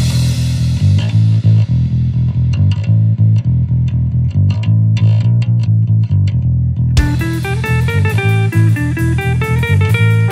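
Instrumental break of a heavy metal and funk band, no vocals: a bass guitar riff carries it with a few light cymbal ticks. About seven seconds in, guitar and drums come back in with a fast riff.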